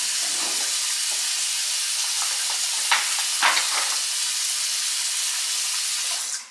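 A steady hiss, with two brief, slightly louder sounds about three seconds in.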